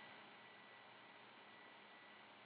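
Near silence: room tone, a faint steady hiss with a thin high steady tone.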